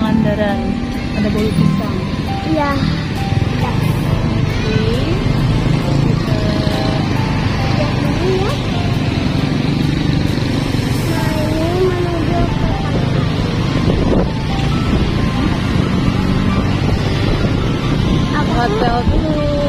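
Steady engine and road noise from a moving vehicle, under background music with a sung melody.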